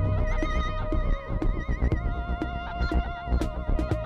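Improvised electronic music from analog synthesizers: several held synth tones, one high tone wavering up and down with a steady vibrato, over a dense low bass and a scatter of short clicking percussive hits.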